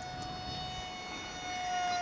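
FunJet RC plane's 2600 kV brushless motor and 6.5×5.5 propeller whining at high throttle in a fast pass. It is one steady high whine that grows louder about one and a half seconds in, then drops slightly in pitch near the end as the plane goes by.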